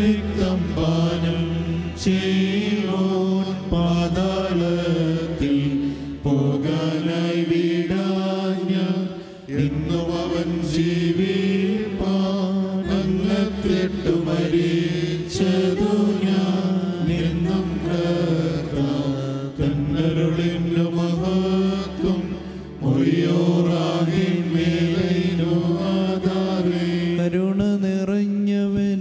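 Syriac Orthodox evening-prayer chant sung by men's voices into a microphone, in long melodic phrases that move in small steps. The singing breaks off briefly about nine and twenty-three seconds in.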